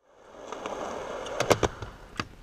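Skateboard wheels rolling over a concrete and wooden park surface, fading in, then three sharp clacks of the board close together about one and a half seconds in as the skater pops off a wedge ramp.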